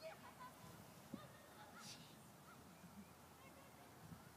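Faint honking bird calls, several short notes, over a very quiet outdoor background, with a soft low thump about a second in.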